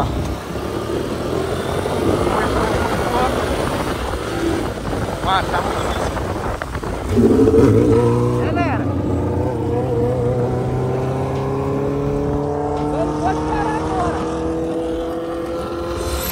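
Motorcycle engines running on the move, with wind and road noise on the microphone. About seven seconds in, an engine note comes in louder and then climbs steadily in pitch as a motorcycle accelerates.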